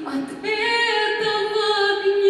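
A woman singing into a microphone: a short lower note, then a long high note held with vibrato from about half a second in.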